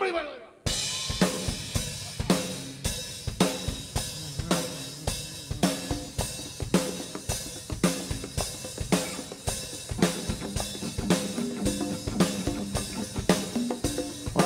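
A live Latin band starts a song sharply, a little under a second in: drum kit and percussion playing a steady driving beat with bass guitar underneath.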